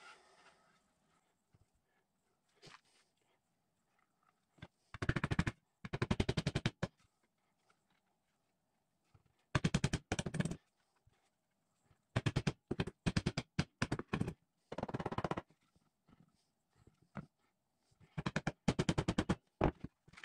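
Hammer driving nails into 1x4 wood boards, in several bursts of quick, sharp strikes with short pauses between.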